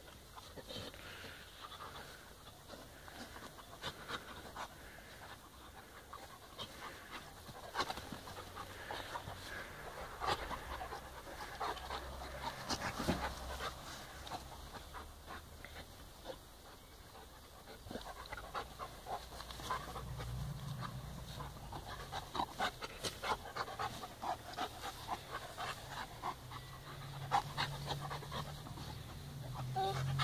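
A Bernese Mountain Dog and a Czechoslovakian Wolfdog play-wrestling, with dog panting and many short scuffs and rustles throughout. It gets busier in the second half.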